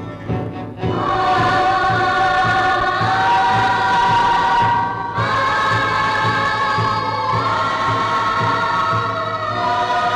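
Film score: a choir sings long held chords over orchestral backing, with a steady low drum pulse underneath. The choir comes in about a second in, breaks off briefly near the middle, and the chords change every two or three seconds.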